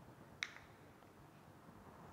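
Near silence: room tone, with one short, sharp click about half a second in.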